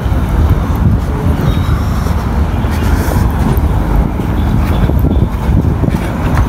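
Road traffic noise from a busy main road: a steady low rumble of passing vehicles.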